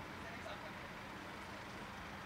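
Car engine idling with a steady low hum, with faint voices in the background.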